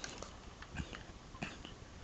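Faint handling noise of a plastic Nerf toy blaster being held and turned: a few soft, short clicks and knocks over low room noise.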